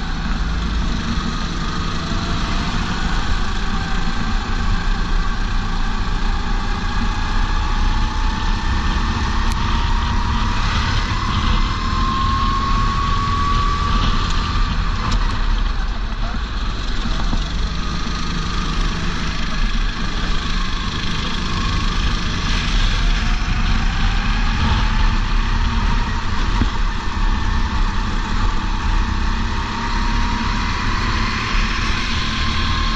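Kart engine on track, its note climbing steadily as it accelerates, falling away about fourteen seconds in as the throttle comes off, then climbing again through the last third. Heavy wind rush on the helmet-mounted microphone runs underneath.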